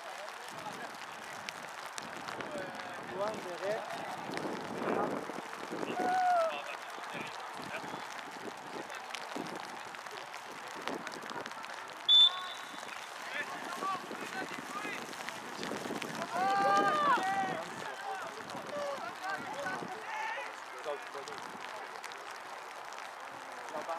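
Shouts and calls of players and spectators at a soccer game, loudest a few seconds in and again around seventeen seconds. About twelve seconds in comes one short, sharp blast of a referee's whistle.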